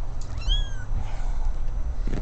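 A kitten mewing once: a short, high-pitched cry that rises and falls, about half a second in.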